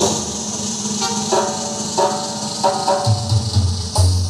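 Electronic keyboard dance music with a programmed percussion rhythm: short chords repeat on the beat, and a deep bass line comes in about three seconds in.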